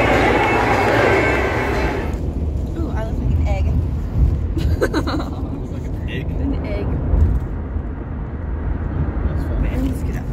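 Loud crowd noise from a packed baseball stadium for about two seconds. It cuts off suddenly to the steady low road rumble inside a moving car, with a few brief bits of voice over it.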